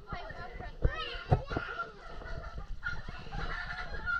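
Several people's excited shouts and squeals overlapping in a water-filled cave, with two sharp knocks a little after a second in.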